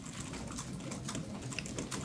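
Faint, irregular clicking of computer keys being typed in a quiet room.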